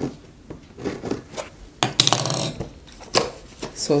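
Scissors cutting the paper seal sticker on a cardboard laptop box: sharp snips, a short tearing rustle about two seconds in, and cardboard being handled.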